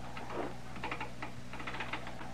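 Telegraph key clicking in quick, irregular runs as a line is worked, a radio-drama sound effect, over a steady low hum.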